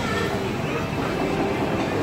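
Busy restaurant din: many diners' voices overlapping into an indistinct, steady crowd chatter.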